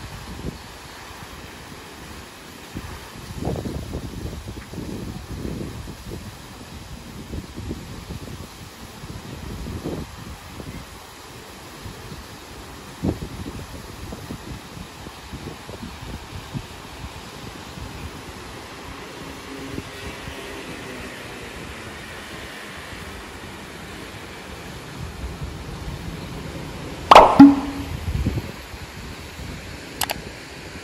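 Steady hiss of spraying fountain jets, with wind buffeting the microphone in low gusts for the first ten seconds or so. Near the end comes one sudden sharp sound, the loudest moment.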